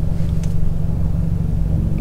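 Steady low rumble inside a parked car's cabin, with a few steady low tones and no other sound.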